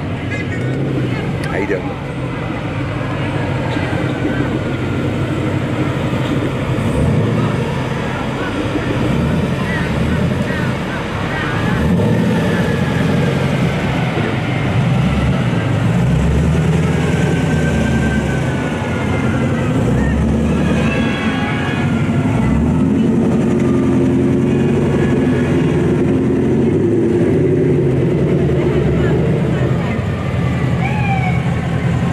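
Engines of sports cars rolling past slowly one after another, a continuous low running sound that grows louder about halfway through, with voices in the background.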